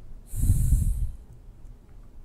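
A person's breath: one short, loud rush of air lasting just under a second.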